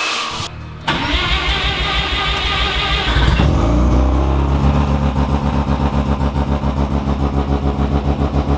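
A heat gun blows briefly, then a car's rotary engine is cranked for about two and a half seconds, catches, and settles into a steady, pulsing idle.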